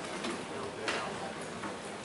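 Faint, indistinct voices over a steady background hiss, with a single sharp click about a second in.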